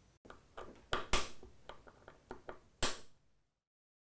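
Handling noise: a series of light clicks and knocks, the loudest about a second in and just before three seconds, then the sound cuts off suddenly.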